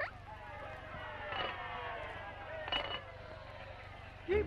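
Cartoon sound effect: several tones slide slowly down in pitch together, like a machine winding down, with two short high squeaks about a second and a half and three seconds in.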